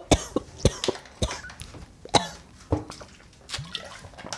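A person coughing in a fit of several short, sharp coughs, about half a second to a second apart.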